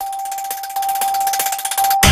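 Electronic sound effect of a news channel's logo outro, starting suddenly: one steady high tone held under a fast, shimmering hiss.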